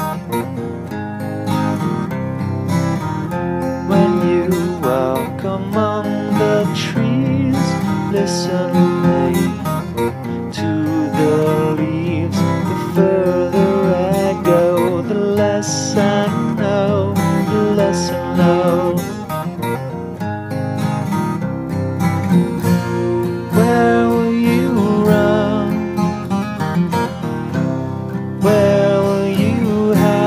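Acoustic rock song playing: strummed and picked acoustic guitar with other instruments, with no sung words, at a steady full level.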